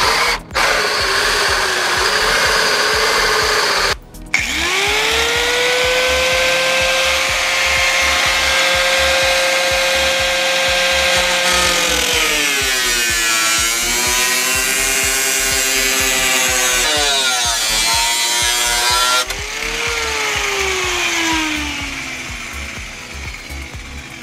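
A cordless drill with a hole saw cuts a hood-pin hole through the car's bonnet for about four seconds. A Ryobi angle grinder then spins up and runs steadily. Its pitch drops and wavers as it grinds the edge of the hole, rises again, and after it is switched off it winds down with a falling whine.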